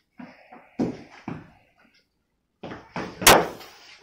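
A few separate thuds and knocks from a wooden cricket bat meeting a leather ball hung in a net, mixed with shoes stepping on a tiled floor; the sharpest, loudest knock comes a little after three seconds.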